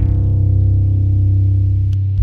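Music: the tail of a heavy rock song. The distorted guitars have dropped away, and a deep, steady, sustained low drone rings on with the treble gone.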